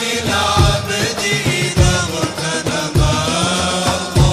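An Islamic nasheed sung by a vocal group over drums, with a deep drum beat falling about once every second and a bit.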